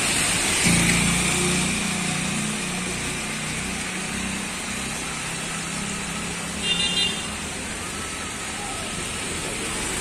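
Roadside traffic noise. A vehicle's engine hum rises suddenly about a second in, passing close and slowly fading. A short vehicle horn toot sounds near seven seconds.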